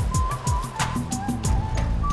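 Television news segment jingle: music with a fast, steady beat, a single high melody line, and falling bass tones.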